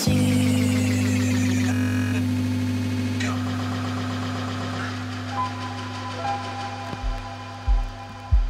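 Psytrance music in a breakdown: the beat drops out, leaving a steady low synth drone that slowly fades, with higher held synth tones coming in about halfway. Deep bass thumps return near the end.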